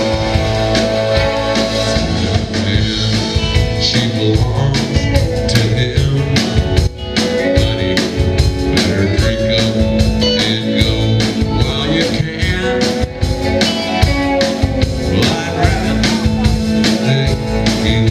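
Live rock band playing an instrumental passage: two electric guitars over upright bass and a drum kit, with a brief drop in loudness about seven seconds in.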